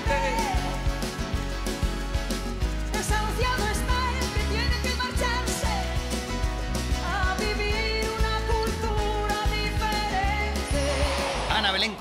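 A woman and a man singing a duet into microphones over live band accompaniment, with a steady bass line and wavering, drawn-out vocal lines.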